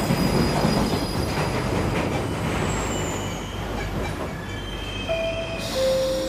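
Subway train running, heard from inside the car: a steady rumble and rattle, with thin, high wheel squeals coming and going.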